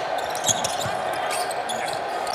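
A basketball being dribbled on a hardwood court during live play, over steady arena background noise.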